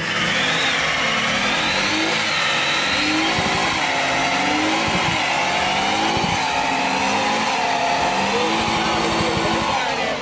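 Car doing a burnout: the engine is revving and the tyres give a continuous squeal that wavers in pitch.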